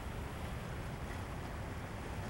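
Steady wind noise on the microphone, a low even rumble, with faint ocean surf beneath it.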